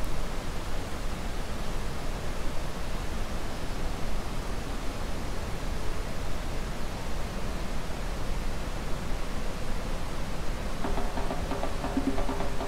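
The Rhine Falls: a steady, even rush of heavy white water. Background music with steady notes comes in near the end.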